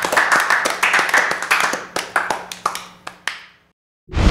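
Audience clapping and applauding at the end of a live blues performance, thinning out and fading to silence about three and a half seconds in.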